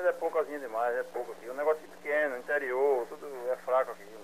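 Speech over a telephone line, thin and cut off in the low end, with a steady low hum beneath it.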